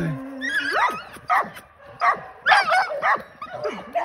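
Young game-bred dog on a chain giving high-pitched yips and whines, about five short wavering calls in a few seconds.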